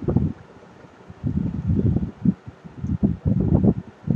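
Muffled rubbing and bumping noise picked up by a close microphone, in irregular bursts, while figures are written with a stylus on a tablet.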